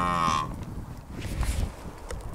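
A cow mooing: one long, steady low call that ends about half a second in. After it, a low wind rumble on the microphone.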